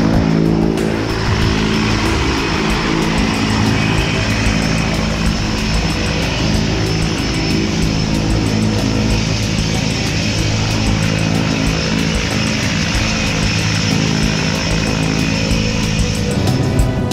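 A jump plane's propeller engine running steadily, with background music over it.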